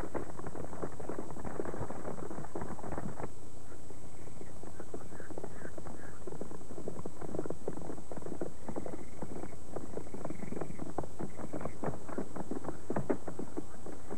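Hooves of several horses clopping irregularly on a dirt track as riders move along at a walk. A steady low hum and a thin high-pitched whine from the worn videotape run underneath.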